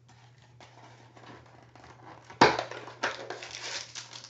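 Crinkling of a trading card pack's wrapper as it is handled and worked open, faint at first and turning loud and sharp about two and a half seconds in.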